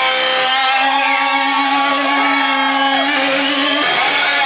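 Live rock band playing loud, with a distorted note held for about three seconds that breaks into a rising slide near the end.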